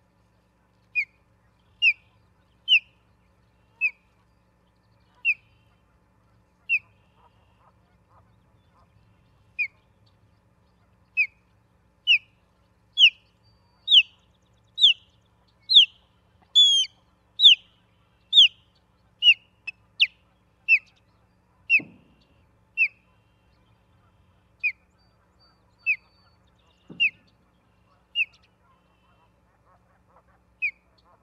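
Osprey calling a long series of short, rising whistled chirps, about one a second, louder and higher-pitched through the middle of the series before easing off again.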